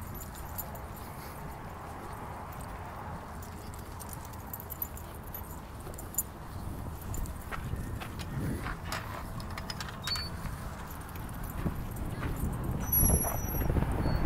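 Footsteps on a dirt path and a dog leash jingling over a steady outdoor background noise, with scattered clicks and knocks that grow busier near the end as a chain-link gate is worked.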